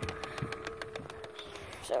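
Electric motor of a Lunging Lily animatronic Halloween prop running as the figure moves, a steady whine with rapid clicking that stops shortly before the end.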